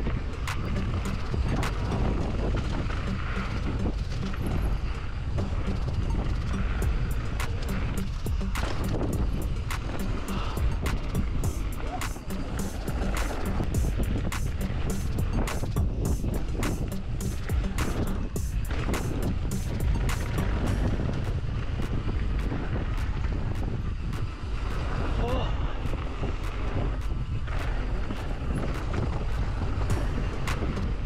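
Mountain bike riding down a rough bike-park trail: a steady rumble of tyres and wind on the microphone, with frequent rattling clicks from the bike over bumps.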